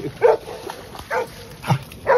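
A dog barking three short times, spread over about a second and a half.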